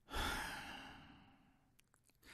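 A person's long sigh, one breathy exhale that fades away over about a second and a half.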